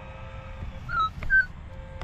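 Minelab E-TRAC metal detector giving two short target beeps about a second in, the first dipping slightly in pitch, as the coil passes over a buried target that reads as a good one, over a faint steady background tone.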